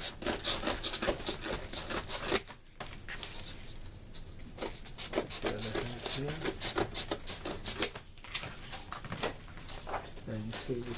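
Cardboard being cut: runs of quick, short rasping strokes, broken by a quieter pause of about two seconds.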